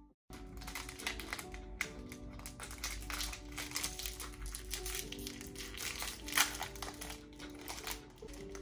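Crinkling and crackling of a shiny foil snack packet being handled and opened, with one sharper crackle about six seconds in, over soft background music.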